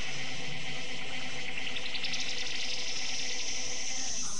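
A hissing electronic noise sweep in a DJ mix, held steady over faint sustained tones, with its pitch rising in steps for about a second partway through.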